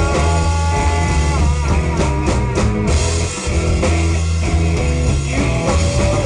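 Live pub-rock blues band playing between sung lines. Drum kit and bass keep a steady groove under held lead notes that bend in pitch near the start and again about a second and a half in.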